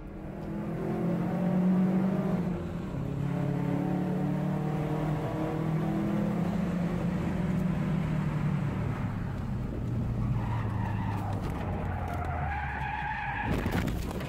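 Car engine running steadily as it drives through a tunnel, its note slowly dropping. From about ten seconds in, tires squeal and skid as the car takes a curve too fast and loses control.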